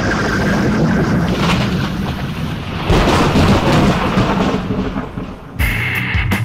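A long, loud rumbling sound effect that swells again about halfway through; music cuts in near the end.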